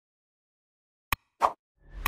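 Sound effects of an animated like-and-subscribe button: a sharp mouse-click a little past one second in, then a short pop, with a rising whoosh starting near the end.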